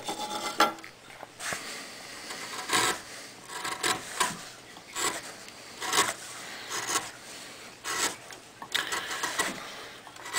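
Hand carving gouge pushed through wood by hand, paring off shavings in short scraping cuts, about one a second.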